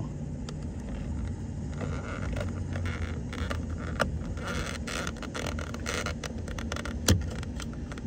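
A small screwdriver scraping and clicking inside the airbag release hole on the back of a Volkswagen steering wheel, probing for the airbag's spring clip. The scratches and light clicks are irregular, with a sharper click near the end, over a steady low hum.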